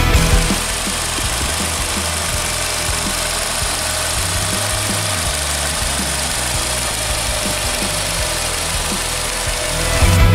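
Volkswagen Vento's 1.6-litre four-cylinder petrol engine idling steadily, heard from the open engine bay.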